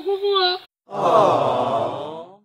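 A person lets out a long, breathy sigh that slides down in pitch, starting just under a second in, after a short high-pitched spoken word.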